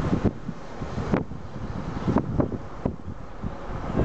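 Wind buffeting the microphone of a camera in a moving car, a low rumble broken by several brief thumps.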